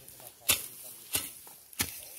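A hand hoe chopping into the earth around the base of a pepper vine: three sharp strikes, about two-thirds of a second apart.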